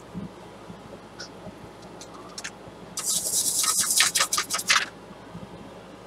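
Toothbrush bristles flicked with a thumb to spatter watercolor paint: a quick run of scratchy flicks lasting nearly two seconds, starting about three seconds in, after a few faint ticks.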